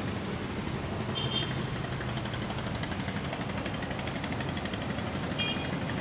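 Steady low rumble of distant road traffic, motorbikes and cars, with a couple of brief faint high chirps about a second in and again near the end.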